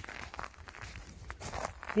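Footsteps on a rocky shore strewn with shells: a few faint, irregular steps.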